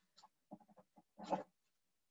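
Faint, brief mumbled vocal sounds from a person on a video call, with the clearest short murmur a little over a second in.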